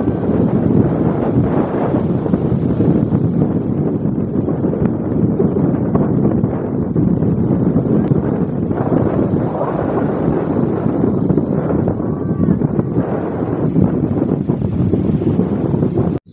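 Strong wind buffeting the microphone, mixed with the steady rush of ocean surf breaking on a sandy beach.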